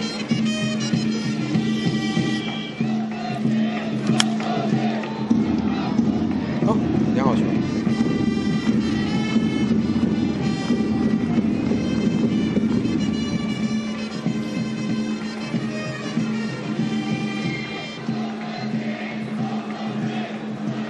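Baseball stadium cheering: horns hold a cheer tune over a chanting crowd. There is one sharp crack about four seconds in as a pitch goes for a strike, and the crowd swells loudly just after.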